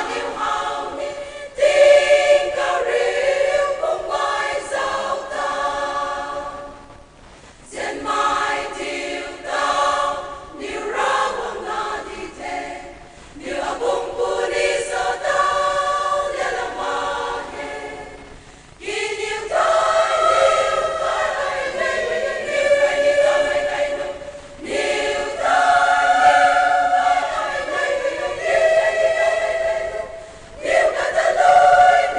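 A large all-women choir singing, in phrases of about five or six seconds with brief breaks between them.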